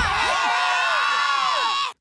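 A group of cartoon children shouting and whooping over one another in a dust-cloud brawl, many falling cries layered together, cutting off suddenly near the end.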